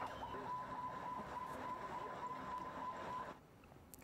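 Riot street sound: a faint crowd din with a steady high tone held on one pitch, cutting off a little over three seconds in.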